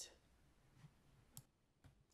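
Near silence: faint room tone with two short faint clicks in the second half.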